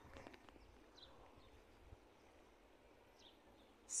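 Near silence: faint outdoor ambience over shallow floodwater sliding quietly across flat concrete, with a few faint high chirps.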